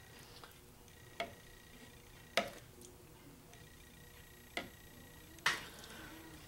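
A metal spoon lightly clinking against a glass measuring cup four times, at uneven gaps, while it skims foam off melted butter being clarified.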